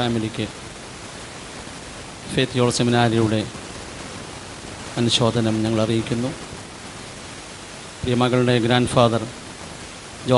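A man speaking into a handheld microphone in three short phrases with pauses between them, and a steady hiss underneath throughout.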